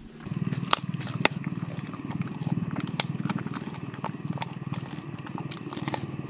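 A dog chewing up a treat, with sharp crunches, the loudest about a second in. Under it, from the first moments, a continuous low pulsing rumble.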